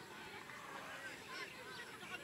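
Distant shouting from several voices across a rugby field, high-pitched overlapping calls from players and spectators.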